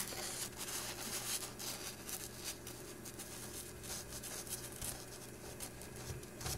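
Faint rustling and light ticks of a printed paper sheet being handled, over a low steady hum.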